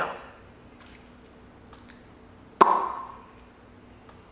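A single sharp knock with a short ringing tail about two and a half seconds in, against quiet room tone and a faint steady hum.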